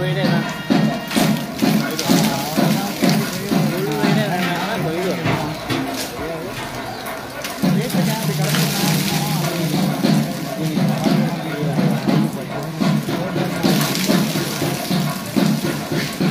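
Many voices chanting or singing together with music, over the splash of liquid poured down a large stone Nandi statue in its ritual bathing. The voices ease off for a couple of seconds around the middle.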